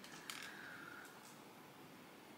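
Near silence: quiet room tone, with one faint click a moment in as small plastic beads are picked up from the table.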